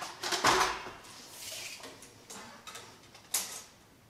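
Rustling and light knocks of a tape measure being handled and held up into the corner of a frame, loudest near the start, with one sharp click a little after three seconds in.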